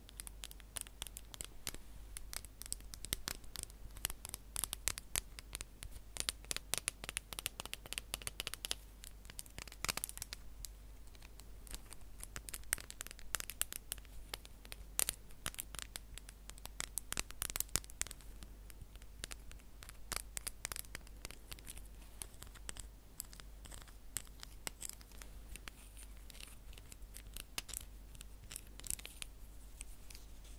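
An unseen object scratched and handled close to the microphone: a dense run of irregular crackly scratches and clicks, with a louder burst about ten seconds in.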